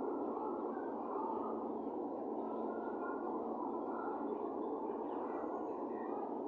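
Steady room noise, a constant even hiss with a few faint, indistinct sounds over it.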